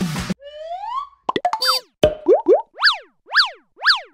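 The last moment of a pop song cuts off about a third of a second in. Cartoon-style logo-animation sound effects follow: a smooth rising whistle-like glide, a quick cluster of pops, two short upward swoops, then three quick chirps that each rise and fall in pitch, about one every half second.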